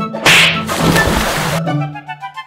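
A person plunging into canal water: a loud splash about a quarter second in, then about a second of churning water, over background music.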